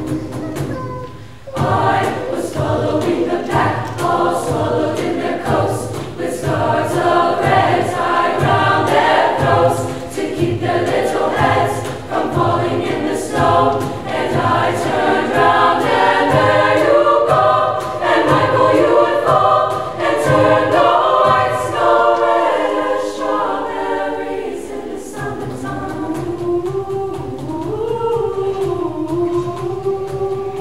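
Girls' choir singing in several parts over a steady low cajon beat. The beat drops out a few seconds before the end, leaving the voices alone.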